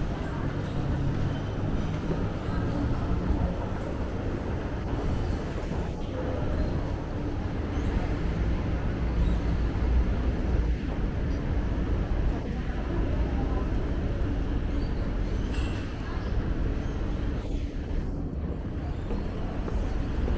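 Steady low rumble of a moving escalator being ridden down, with a background murmur of voices.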